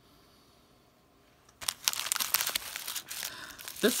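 Clear plastic packaging sleeves crinkling and rustling as they are handled. The sound starts suddenly about a second and a half in and keeps up as a dense crackle.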